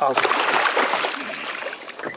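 Water splashing as a hooked amberjack is grabbed and lifted at the boat's side: a sudden burst of splashing that tapers off over about a second and a half.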